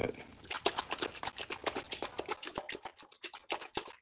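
Rapid, irregular light clicks and taps, several a second, from paint cups and tools being handled while mixing and adding paint.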